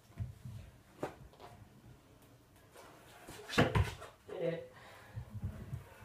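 Kick scooter on a concrete driveway during a trick attempt: mostly quiet rolling and light knocks, with a sharp clatter of deck and wheels hitting the concrete about three and a half seconds in, and a few low thumps near the end.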